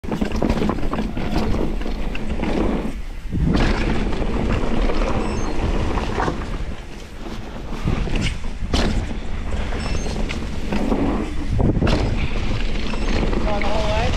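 Mountain bike ridden fast down a dirt jump line covered in dry leaves: steady tyre and wind noise with the bike rattling over the ground. Twice the noise drops briefly, then a sharp thud follows, as on a landing, and other knocks come between. A short voice is heard near the end.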